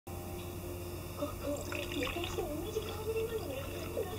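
Liquid being poured from a glass carafe into a paper cup, over a steady low hum.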